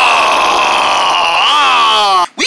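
A person's voice drawing out one long vowel, like a held sung note, sinking slightly in pitch and then wavering upward near the end.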